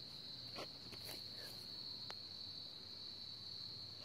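Crickets trilling in a steady, faint, high-pitched chorus, with a few faint clicks.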